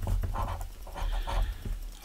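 Silver coin scratching the coating off a scratch-off lottery ticket in a string of short, quick strokes.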